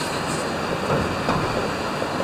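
Steady road noise inside a moving van's cabin: tyre and engine rumble as it drives along.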